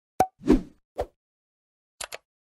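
Three short pop sound effects from an animated subscribe-button graphic. There is a sharp pop, then a longer, fuller pop about half a second in, then a lighter pop about a second in.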